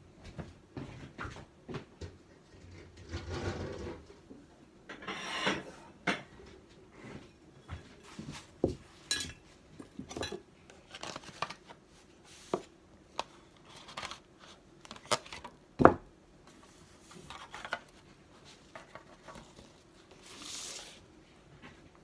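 Kitchen utensils, bowls and cutlery clinking and knocking irregularly during baking, with the loudest knock about 16 seconds in. Between the knocks come a few short scraping or rustling noises.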